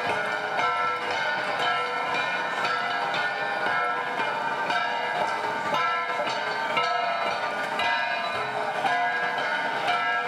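Handheld flat bronze gongs (gangsa) struck with sticks by two players, repeated metallic strikes in a steady interlocking rhythm, each stroke ringing on into the next.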